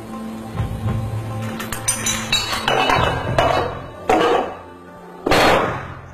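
A chain of dominoes growing from tiny to over a metre tall toppling one into the next: a quick run of small clicks about two seconds in, then heavier knocks spaced further apart and getting louder, the loudest near the end. Background music plays underneath.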